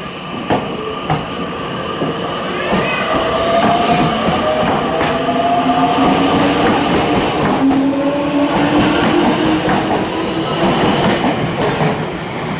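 A Keio 1000 series electric train pulling away from a station platform, its traction motors whining in two tones that climb slowly in pitch as it gathers speed. The wheels click over the rail joints now and then.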